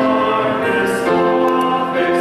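A church congregation singing a hymn together, with long held notes that step from pitch to pitch.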